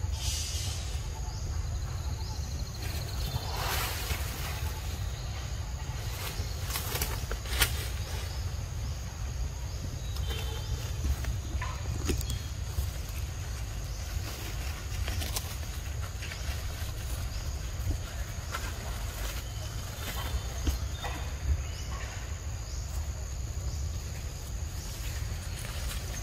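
Outdoor ambience: a steady low rumble with scattered crackles and snaps of dry leaves and twigs as monkeys move through cut branches and leaf litter, plus a few faint high chirps.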